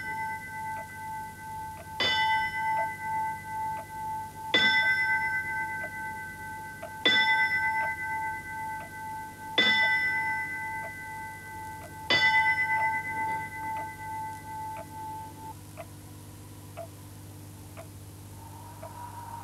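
A bell struck five times, once every two and a half seconds, each stroke ringing out clearly until the next. After the last stroke, about twelve seconds in, the ringing fades away over a few seconds.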